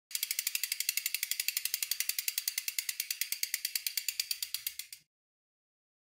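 Mountain-bike rear hub freewheeling: the pawls clicking rapidly, about a dozen clicks a second, easing slightly before cutting off abruptly about five seconds in.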